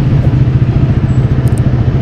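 KTM RC 390's single-cylinder engine idling steadily, fitted with a slip-on Termignoni exhaust.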